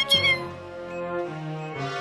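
Cartoon background music with held, sustained notes. Right at the start there is a brief high, warbling squeak that glides up and down.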